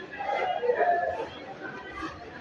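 Indistinct voices chattering in the background, with no clear words.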